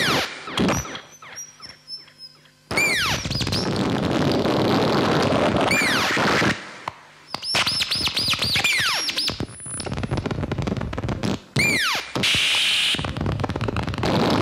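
Electronic noise from a patched Ciat-Lonbarde and modular synthesizer setup: dense crackling noise cut through by repeated quick downward pitch swoops. It thins to sparse falling blips about half a second in, then slams back in near three seconds; it drops out briefly again around seven and eleven seconds, with a hissy burst near the end.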